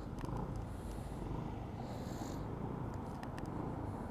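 Motor scooter's engine running at low road speed, a steady low throb, with a few faint clicks over it.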